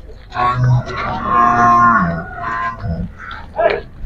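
Murrah water buffalo calling: one long low moo of about two seconds, dropping in pitch at the end.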